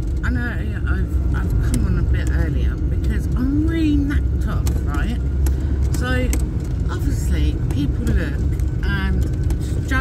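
Steady low road rumble inside a moving vehicle's cabin, with a voice talking on the radio over it.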